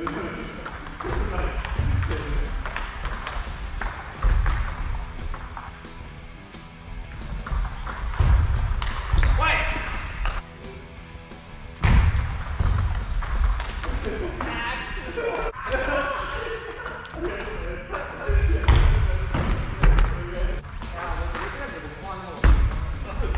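Table tennis rallies in a large hall: the celluloid ball clicking off rackets and table in quick exchanges, heavy thuds of footwork on the wooden floor, and players' shouts after points.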